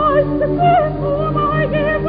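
Operatic soprano singing sustained notes with wide vibrato, accompanied by a full orchestra.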